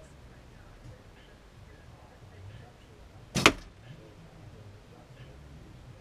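A Win&Win recurve bow shot: one sharp snap as the string is released and the arrow leaves, about three and a half seconds in.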